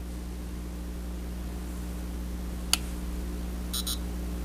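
Buttons of a Chronos GX digital chess clock being pressed: a single sharp click about two and a half seconds in, then a brief electronic beep near the end as the display switches to the saved move times. A steady low electrical hum runs underneath.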